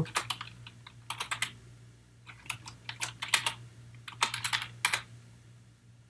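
Computer keyboard typing: keystrokes clicking in short, irregular bursts with brief pauses between them as a word is typed.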